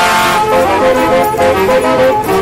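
Brass band playing a melody, trumpets and trombones moving from note to note in short held tones.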